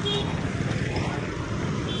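Steady road traffic noise with a low rumble, picked up on a phone microphone outdoors.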